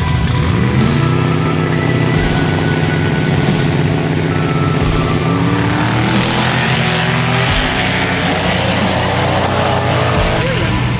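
Drag-car engines rev at the start line, then accelerate hard away down the street. The engine note climbs in pitch about half a second in and again about five seconds in.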